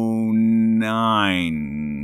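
A man's voice holding one long, drawn-out hesitation sound, like a sustained 'uhhh', with the vowel changing about a second in and the pitch sagging slightly near the end.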